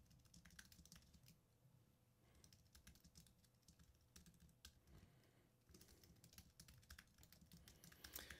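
Faint typing on a computer keyboard: scattered, irregular key clicks over near silence.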